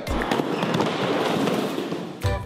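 Dense crackling noise, steady for almost two seconds, like a fizzing fireworks-crackle effect.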